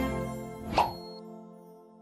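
Closing promo jingle of a news channel: held synthesized notes fading out, with one short pop about three-quarters of a second in, the loudest moment, followed by a brief high tone.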